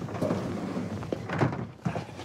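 Hinged metal access panels of an air handling unit being unlatched and swung open, a few short knocks and clicks over a steady hiss.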